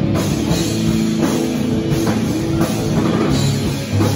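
Live rock band playing loudly: electric guitar, bass guitar and drum kit, with steady drum hits under held low notes.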